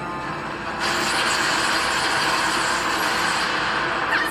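Anime battle sound effect from the episode's soundtrack: a loud, steady rushing noise that sets in about a second in and holds, like a blast or energy clash in a fight scene.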